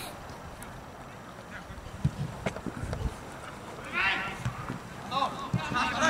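Shouted calls from players on a football pitch, high-pitched and short, about four seconds in and again near the end, over open-air background with a few faint knocks earlier on.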